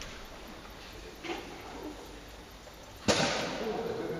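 A single sharp smack about three seconds in, ringing on in a large hall, over the low murmur of a seated crowd.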